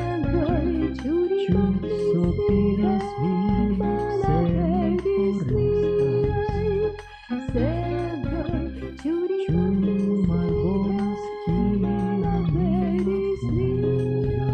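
A song playing: a vocal duo singing a melody over a steady rhythmic instrumental accompaniment, with brief pauses between phrases.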